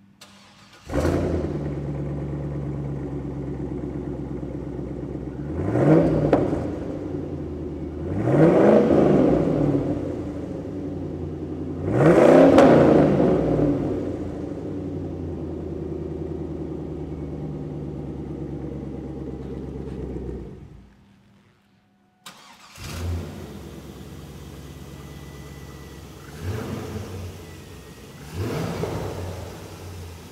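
A 2002 Chevrolet Camaro SS's LS1 V8 cold-starting through its SS exhaust, catching loudly about a second in, then idling with three short revs. After a brief silence about two-thirds of the way through, it idles again more quietly, with two more revs.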